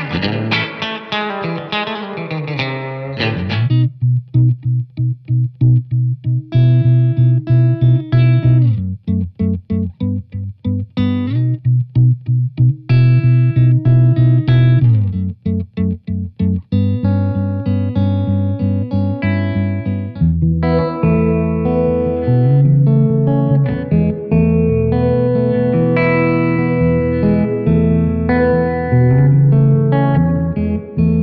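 Electric guitar, a Fender Telecaster, played through a Blackstar St. James 50-watt all-valve head into a 2x12 cabinet with Celestion Zephyr speakers. It opens with strummed chords, then plays short, choppy stabbed chords with brief silences between them, and from about halfway on moves to fuller, ringing chords.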